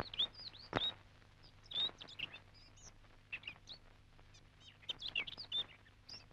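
Birds chirping in short, scattered calls, with a couple of soft knocks in the first two seconds.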